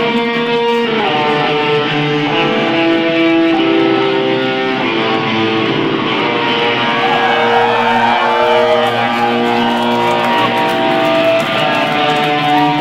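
A band playing live, with electric guitars holding long sustained notes in a slow melodic line over a continuous full-band wash.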